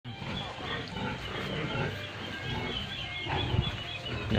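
Farmyard animal sounds from a netted run of native chickens: a rapid series of short high chirps over lower, denser animal calls.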